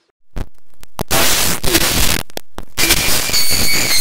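Loud harsh digital noise and static, a deliberate glitch effect. It starts after a brief silence, cuts out in short gaps over the first three seconds, then runs on with faint steady high tones in it.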